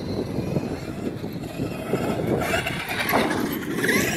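Traxxas X-Maxx electric RC monster truck driving over a dirt track: its brushless motor and drivetrain whine over the noise of the tyres on dirt. The sound grows higher and louder about two and a half seconds in and again near the end.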